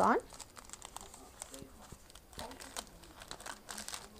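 Clear plastic cellophane sleeve crinkling faintly in short scattered rustles as it is handled.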